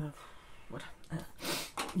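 A short sniff through the nose just after a sneeze, between a woman's few quiet words.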